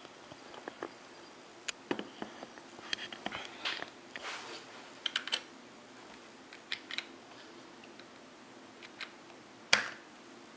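Computer keyboard keys pressed in scattered taps and short clusters, with a louder click near the end.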